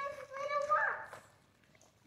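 A young girl's high voice letting out one long wordless note. It holds fairly steady at first, then rises in pitch and breaks off after about a second.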